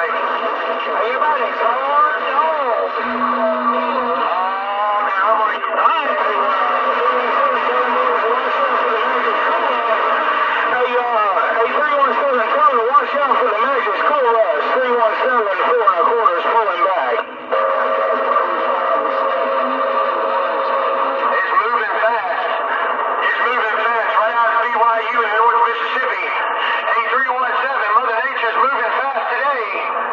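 Galaxy DX 959 CB radio receiving a busy channel 28: garbled, overlapping voices from several stations talking over each other, with whistles and squeals mixed in, in thin band-limited radio audio. Just past the middle the audio cuts out for an instant, then a steady whistle tone holds for a few seconds.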